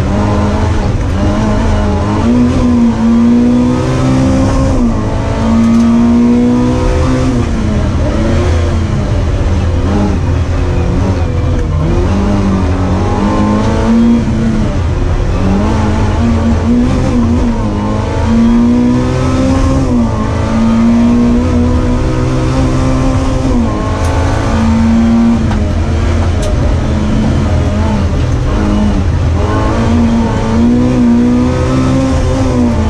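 A small racing car's engine revving hard, heard from inside the cabin. Its pitch climbs and drops again and again as the car accelerates, shifts and brakes through a slalom course.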